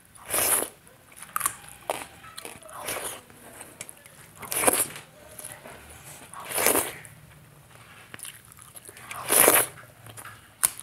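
Close-miked eating sounds of rice and watery ridge gourd curry eaten by hand: chewing and wet mouth noises, with louder bursts about every two seconds and small clicks between them.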